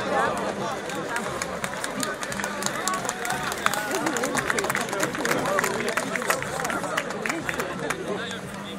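A crowd of spectators talking and calling out over one another, with a flurry of sharp clicks through the middle.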